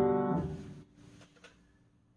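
Final G major chord on a piano, a right-hand G over a left-hand B–D–G chord, dying away and cut short about half a second in as the keys are released. A few faint soft clicks follow about a second in.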